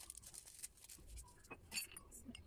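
Faint clinks and light knocks of ceramic mugs being handled at a kitchen dish rack, with the loudest clink a little before the end.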